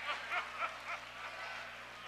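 A congregation reacting with short bursts of laughter, in quick repeated pulses that fade after about a second.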